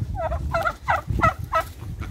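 Turkey calling: a run of about five quick, evenly spaced notes, roughly three a second, that stops shortly before the end.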